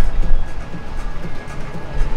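Background music with a steady low rumble beneath it.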